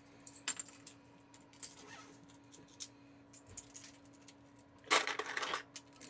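Small plastic game chips clicking against each other and the tabletop as they are picked out of the box and set down. There are a few light clicks, then a quick run of clatter about five seconds in.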